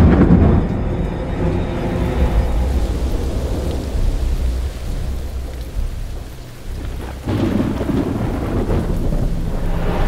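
Thunder rumbling over steady rain, with a loud clap at the start and another swell of rumble about seven seconds in.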